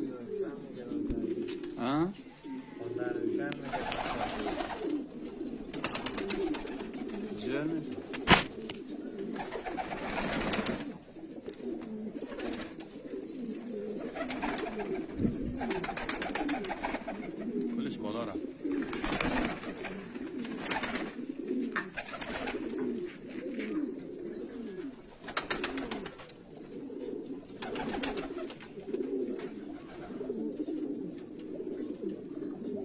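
A flock of domestic pigeons of Afghan breeds cooing without a break, many low wavering coos overlapping, with short rustling bursts every few seconds and one sharp knock about eight seconds in.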